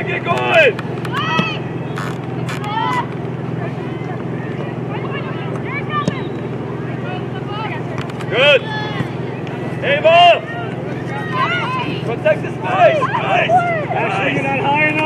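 Short shouted calls from soccer players and sideline spectators during play, loudest about half a second in and again near 8, 10 and 13 seconds, over a steady low rumble.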